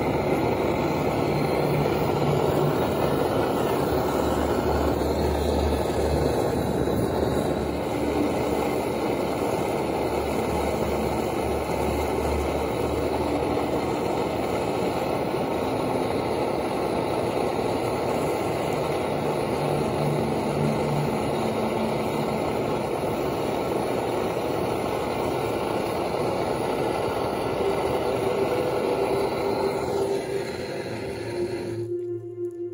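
Hand-held gas blowtorch flame burning with a steady hiss-roar while it heats a copper pipe joint for soldering.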